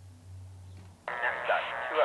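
A faint low hum, then about a second in a voice comes in suddenly over a two-way dispatch radio, sounding thin and tinny.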